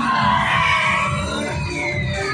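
Loud stunt-show music with a pounding beat, and high squeals gliding up and down in pitch over it.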